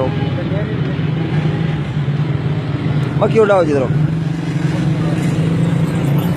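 A vehicle engine running steadily close by, heard as a low continuous hum, with street noise; a person's voice speaks briefly about three seconds in.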